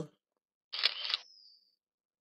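A short, sharp burst of noise lasting about half a second, starting a bit under a second in and trailing off in a faint high whistle.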